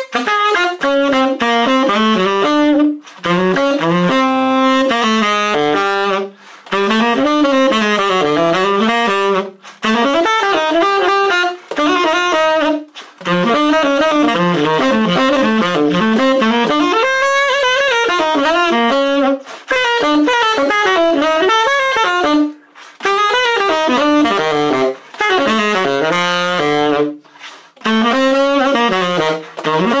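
Unaccompanied tenor saxophone playing a bebop-style jazz etude in fast running eighth notes, the upbeats tongued and slurred into the downbeats (mainstream jazz articulation). The lines come in phrases broken by short breath pauses.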